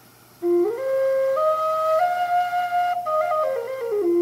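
River-cane Native American flute played as a tuning check after a finger hole was burned larger. It starts about half a second in on the low note, steps up through its scale in clear held notes and comes back down to the low note near the end, which is still a little flat.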